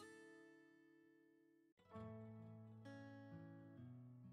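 Faint background music of plucked acoustic guitar notes ringing and fading; it breaks off for an instant a little under halfway, then goes on with new notes.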